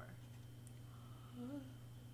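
A woman's short, soft hum about a second and a half in, over a steady low electrical hum.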